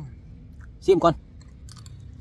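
A man's short spoken phrase, then a few quick faint clicks from a metal spoon and his mouth as he takes a spoonful of raw beef koy into his mouth to taste it.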